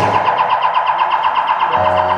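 Live rock band dropping out to one instrument's fast warbling high note, pulsing about ten times a second; the bass comes back in near the end.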